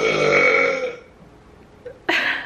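A woman's long voiced sigh, lasting about a second and fading away.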